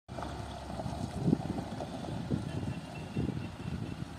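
Pickup truck driving slowly over a dirt yard, its engine running as a steady low rumble, with irregular low surges of wind buffeting the microphone.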